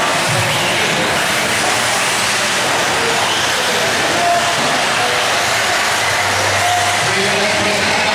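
Several 1/8-scale nitro RC buggies racing, their small engines making a dense, steady high-pitched whine with indistinct voices over it.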